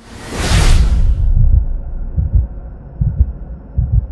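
Logo-reveal sound effects: a loud whoosh that swells and fades over about the first second, followed by deep bass thuds roughly once a second.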